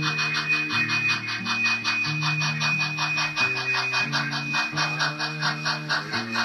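Model steam locomotive running, with rapid, even chuffing at about seven strokes a second and a steady high whine, over background music with sustained low notes.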